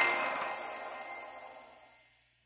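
The last chime-like note of a short intro music sting rings on and fades out, dying away to silence after about a second and a half.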